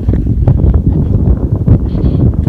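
Wind buffeting the microphone: a loud, low, uneven rushing.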